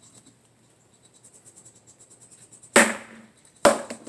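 A wooden practice talwar strikes a tape-wrapped wooden pell twice, sharp knocks about a second apart near the end, each with a brief ring.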